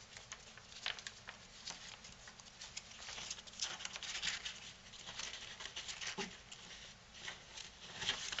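Faint, irregular crackling and ticking of a narrow cardstock strip as its pleat creases are refolded and pressed between the fingers.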